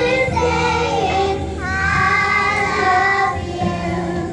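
A group of young children singing a song together, with musical accompaniment underneath.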